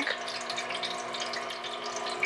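Water trickling and splashing as it pours in thin streams down the tiers of a plastic party drink fountain into its bowl, with a steady hum underneath.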